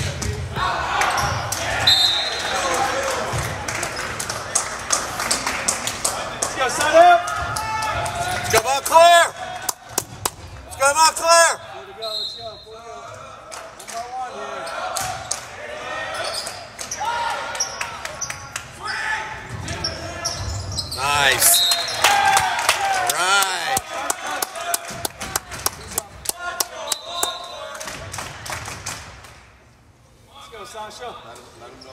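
Volleyball rally in a gymnasium: a jump serve, then the ball smacked and bouncing on the hardwood floor, with repeated sharp hits and bursts of shouting from players and spectators.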